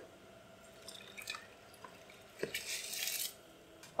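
Soaked rice poured from a bowl into a pot of water: a few faint clicks, then a brief soft splash and hiss as the rice slides in, near the end.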